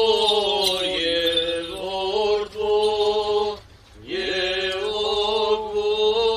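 Male clergy chanting an Armenian Apostolic liturgical hymn in long held notes over a low steady tone, breaking off for a brief pause a little past halfway before the chant resumes.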